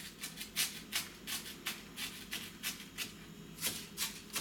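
Chef's knife chopping onion into very small dice on a plastic cutting board: quick, uneven knife strikes, about four a second.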